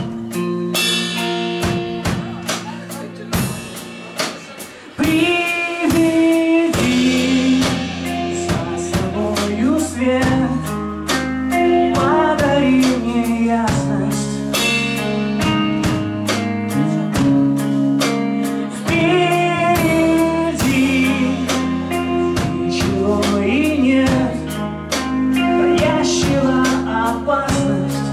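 Live rock band playing an instrumental passage between sung lines: electric guitars, bass guitar and drum kit. The music drops to a softer stretch for a few seconds and the full band comes back in about five seconds in.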